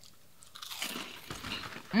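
A person biting into and chewing crunchy fried pork rinds. A run of irregular crunches starts about half a second in.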